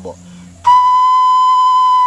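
Xutuli, a small Assamese clay whistle, blown with one steady, clear high note that starts about two-thirds of a second in and holds without wavering. This is its higher note, sounding with a finger hole left open.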